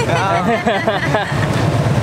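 Two men laughing for about the first second, over the steady low rumble of city street traffic.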